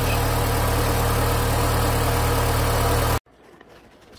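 A 2004 Honda Civic's four-cylinder engine idling steadily in the open engine bay. The sound cuts off abruptly a little over three seconds in, leaving faint room tone.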